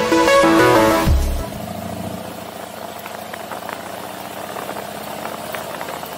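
Electronic music with a bass drop that ends about a second in, then a steady drone of a motorcycle under way, engine and road noise.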